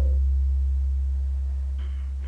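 A low, steady humming tone from the film's musical score, fading slowly, with a faint higher tone above it.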